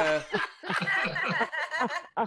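Laughter, snickering in quick, choppy bursts.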